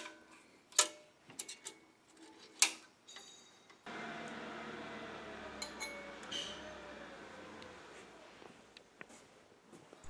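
A few light metallic clicks and taps as the BCS tractor's clutch cable and its fittings are handled, in the first four seconds. Then a faint, steady workshop room hum until shortly before the end.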